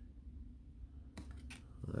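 Faint handling of baseball trading cards in the hands: a couple of light clicks as cards are slid over one another, about a second in, over a low steady room hum.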